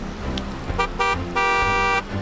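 Vehicle horn honking: two short toots about a second in, then one long steady blast.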